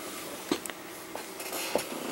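A few faint, sharp clicks and a light rustle over quiet room tone.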